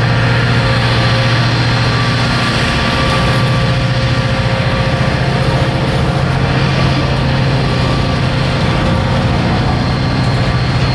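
EMD SD40-2 diesel-electric locomotive, its turbocharged 16-cylinder 645 engine working steadily as it pulls a cut of boxcars at low speed, with the rumble of the rolling cars. The engine's pitch steps up slightly about three seconds in.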